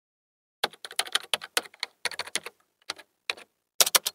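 Computer keyboard typing: a quick, irregular run of key clicks that starts under a second in and runs as text is typed into a search bar.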